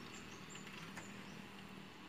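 Faint, steady sizzle of spoonfuls of chicken meatball batter frying in hot oil in a wok, with a faint low hum underneath.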